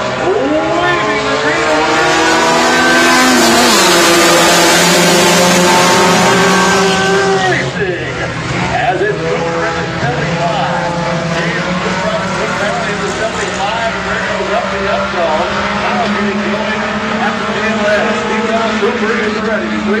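A pack of four-cylinder Hornet-class stock cars racing on a dirt oval, many engines running at high revs together. The pack passes close, loudest from about two to seven seconds in, then drops off suddenly, and the engines carry on further away.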